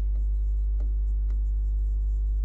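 Chalk writing on a chalkboard: light, irregular taps and scratches of the strokes, over a steady low hum.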